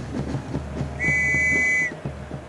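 A referee's whistle blown once to signal the kick-off: a single steady, high-pitched blast of just under a second, starting about halfway in.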